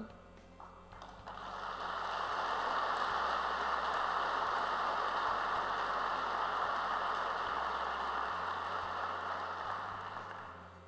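Audience applauding. The clapping swells in about a second in, holds steady, and dies away near the end.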